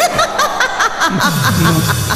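A woman laughing loudly in quick, rhythmic bursts, like a deity's triumphant laugh, with lower falling tones following in the second half.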